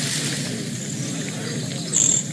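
Steady outdoor ambience of running river water with short high bird chirps; a louder chirp comes right at the end.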